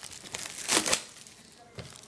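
Clear plastic shrink wrap being torn and crumpled off a trading-card box, with the loudest burst of crinkling just before a second in.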